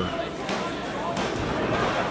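Hall room noise from a small crowd, with a couple of faint thuds, about half a second and a second and a quarter in, as the referee's hand slaps the wrestling mat during a pin count that falls just short of three.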